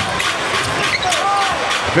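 A basketball being dribbled on a hardwood court, with a few short sneaker squeaks over arena crowd noise.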